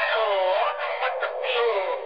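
Electronically processed vocal in a DJ dance remix, its pitch sliding up and down. It sounds thin, with almost no bass.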